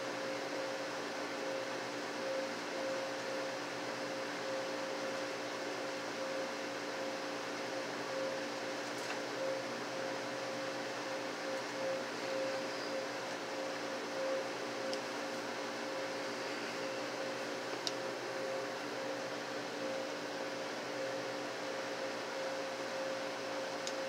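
Steady mechanical hum of refrigerated glass-door drink coolers, their fans and compressor running with a constant tone. There are a couple of faint ticks.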